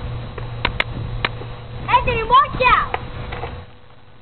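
Skateboard wheels rolling on an asphalt driveway: a steady low rumble with a few sharp clicks, stopping shortly before the end. About two seconds in, a child's high voice calls out briefly.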